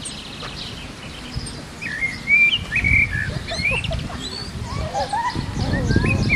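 Several wild birds chirping and twittering in quick, overlapping calls, busiest from about two seconds in. Beneath them is a low rumbling noise that grows louder near the end.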